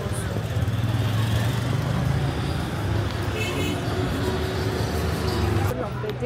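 Street traffic: a vehicle engine's steady low rumble close by under general street noise, with faint voices in the background.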